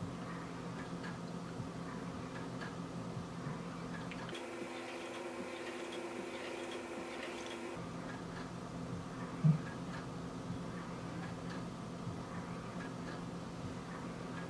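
Faint regular ticking over a steady low hum; in the middle, for about three seconds, the hum gives way to a higher steady tone. A single short thump about nine and a half seconds in.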